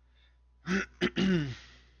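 A man clearing his throat in a couple of quick rasps, starting just under a second in and lasting about a second.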